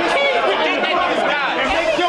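Several voices talking over one another: crowd chatter with no single clear speaker.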